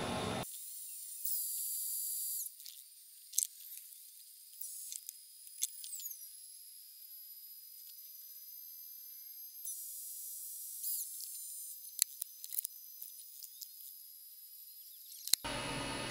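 Tesla Model Y charging noise, its high-pitched whine from the car heating its battery before it charges at the full rate, heard fast-forwarded so that it comes out as thin, very high squeals and whistles. There are a few falling glides and sudden louder stretches about a second in and again around ten seconds in.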